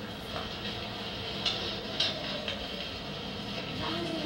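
Steady low room noise in a classroom, with a few faint, brief rustles about one and a half, two and two and a half seconds in.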